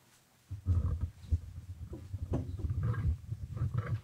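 Microphone handling noise: irregular low rumbling and thumps close to the microphone, starting about half a second in.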